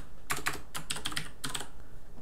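Typing on a computer keyboard: a quick, uneven run of keystroke clicks as code is entered.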